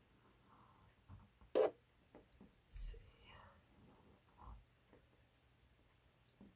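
Black Sharpie marker drawing on paper, faint short strokes of the felt tip, with two sharper noises about one and a half and three seconds in.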